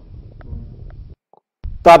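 A pause in a man's speech, with only a faint low rumble. It cuts to dead silence about a second in, and his voice comes back loudly near the end.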